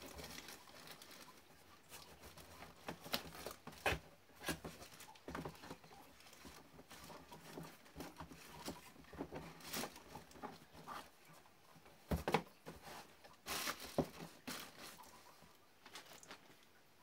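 Items being packed by hand into a cardboard box: irregular rustling of clothes and plastic with soft knocks and bumps against the cardboard, loudest about four seconds in and again near the end.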